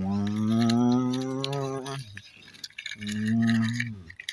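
A person's voice drawing out a long "wow", then a second shorter held call about three seconds in, with light clicking and rattling of a small plastic toy truck being pushed over gravel.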